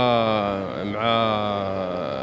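A man's long drawn-out hesitation sound, a held vowel like "uhhh" at a steady, slightly falling pitch. It breaks off briefly a little under a second in and then resumes, held again.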